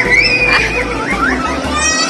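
High-pitched squeals and shrieks of excited children, wavering and gliding in pitch.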